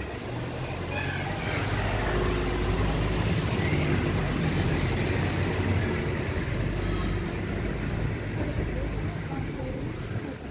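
A motor vehicle's engine running close by, a low rumble that grows louder after a second or two, holds steady and eases off near the end.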